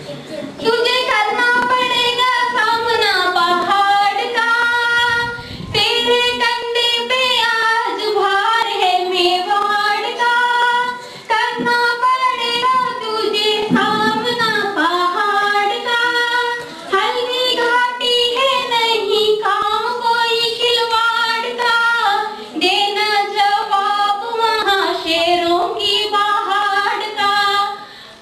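A high female voice singing a melodic song in long phrases, with held notes and pitch slides, and brief breaths between lines.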